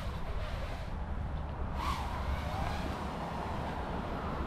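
Steady low outdoor background rumble, with faint short rising-and-falling tones about two seconds in.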